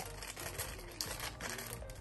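Clear plastic wrapping crinkling and crackling in a run of small irregular rustles as a condenser microphone is pulled out of it.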